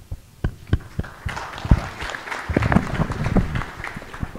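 Audience applauding: a few separate claps at first, filling into steady clapping after about a second.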